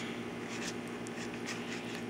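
Faint rubbing and handling sounds of hands working sticky slime, over a steady low hum.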